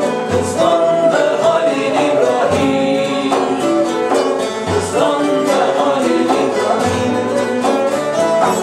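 Turkish folk ensemble of several bağlama (saz) strummed and plucked together with a ney flute, over low bendir frame-drum strokes about every two seconds.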